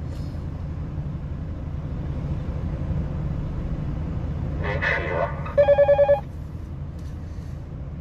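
A steady low rumble, with a brief burst of noise a little past halfway and then a rapid trill of about six electronic beeps in half a second, the loudest sound here.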